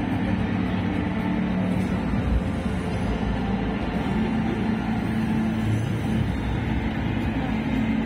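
Steady crowd hubbub of a busy indoor exhibition hall, with a few held low notes of faint background music.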